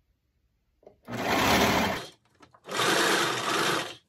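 Brother overlocker (serger) running in two short bursts of about a second each, with a brief stop between, as it stitches a side seam of the pants.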